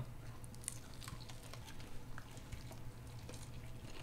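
People biting and chewing hot-sauced chicken wings: faint, scattered wet mouth clicks.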